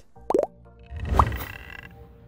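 Editing sound effects for an animated graphic: a short rising pop about a third of a second in, then a louder swelling whoosh with a rising tone about a second in. Soft background music plays throughout.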